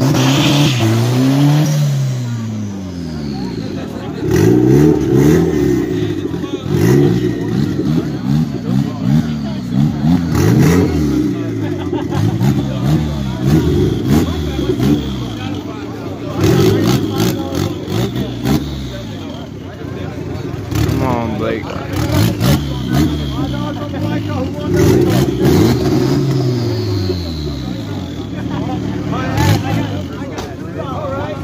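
Car engines revved over and over at a standstill, the pitch climbing and dropping every second or two, sometimes more than one at once.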